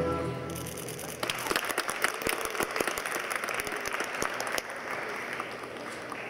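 Figure-skating program music fades out just under a second in. Then audience applause takes over, with separate claps audible.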